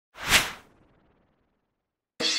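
A single short whoosh sound effect for an animated title graphic, swelling and fading within about half a second.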